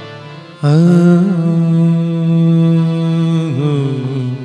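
A male singer holds one long wordless note over a harmonium, in the slow opening alaap of a Hindi devotional bhajan. The note comes in suddenly about half a second in, wavers slightly in pitch, and eases off near the end.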